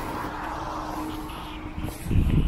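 Steady mechanical hum with a faint, steady tone running through it.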